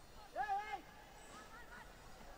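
A short, loud, high-pitched shout, about half a second long, rising and then falling in pitch, about a third of a second in, followed by a fainter call.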